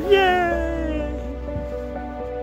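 A single drawn-out vocal cry, falling in pitch over about a second, over background music.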